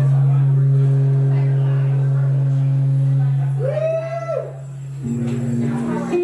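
Opening of a live solo acoustic song: a steady low note is held for about three seconds and fades. A short higher note rises and falls at about four seconds, and the low note comes back near the end.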